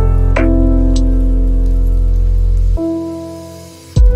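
Slow relaxation music of soft held notes over a deep sustained bass, with the sound of rain and dripping drops mixed in. About three quarters of the way through the bass stops and the music fades, until a new chord comes in at the very end.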